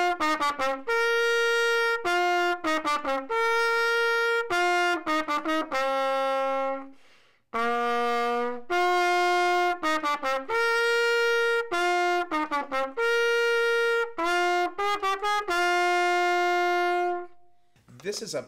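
Trumpet playing a short, simple tune of quick notes and long held notes. The phrase comes twice with a brief break between, and the playing stops shortly before the end.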